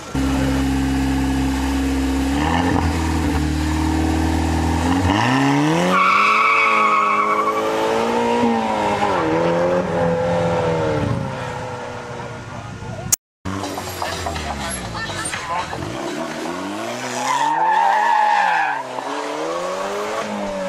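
KTM X-Bow's turbocharged Audi 2.0-litre four-cylinder holds a steady low note, then revs hard up and down as the car accelerates away. There is a wavering tyre squeal about six seconds in and again near the end, as the car slides. The sound cuts out briefly about thirteen seconds in.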